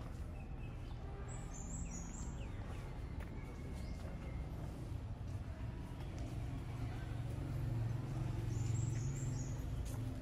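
Birds chirping in short high bursts, once early and again near the end, with a few faint whistled notes between. Under them runs a steady low rumble that swells a little toward the end.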